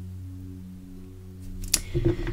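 A steady low hum made of a few held tones. A single sharp click comes near the end.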